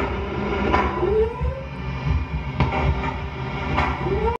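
Playback of a frequency-boosted EVP recording: a steady low rumble, a tone that rises in pitch about a second in and starts to rise again near the end, and three sharp clicks.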